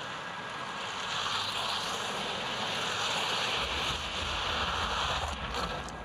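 Ski jumper's skis running down the inrun's tracks: a steady hiss that grows as she gathers speed, with a low rumble joining about halfway through, thinning just before the end as she takes off.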